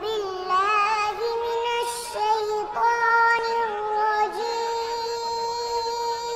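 A child's high voice singing, wavering in pitch at first, then holding long drawn-out notes for several seconds.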